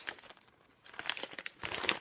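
Plastic snack packets of dried seeds crinkling as they are handled and held up; quiet for about the first second, then a run of short crinkles.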